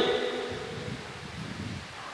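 A pause in a man's amplified speech: his last word fades out in the hall's echo over about half a second, leaving faint, steady room noise.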